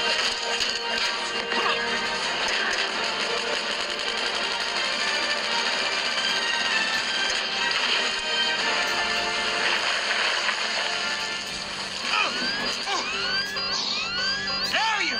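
Dramatic film score mixed with action sound effects, dense and steady throughout. Near the end a run of quick sweeping glides rises and falls over the music.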